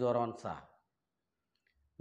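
A man speaking to a close lapel microphone, stopping less than a second in; then dead silence until his speech starts again at the very end.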